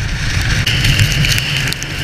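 Wind and road rumble from a Honda CB650F motorcycle riding at highway speed in heavy rain, with raindrops ticking on the camera and a steady high hiss coming in under a second in.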